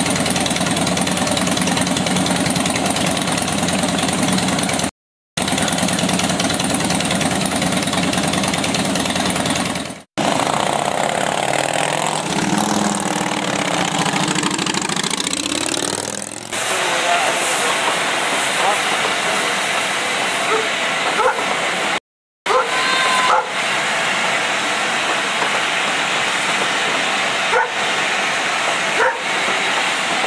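Cruiser motorcycle engines running steadily, then revving with a pitch that climbs and falls as a motorcycle pulls away. After a cut comes a steady hiss with voices faintly in the background.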